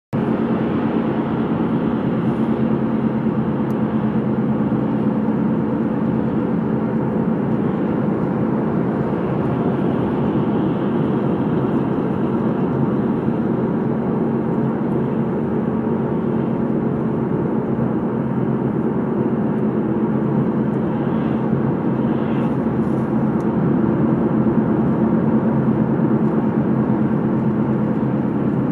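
Steady road and engine noise inside a moving car's cabin: an even drone of tyres and engine that holds the same level throughout.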